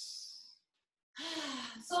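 A woman's breathy sigh, a long exhale, that fades out about half a second in. After a short pause her voice starts up again with a drawn-out sound leading into speech.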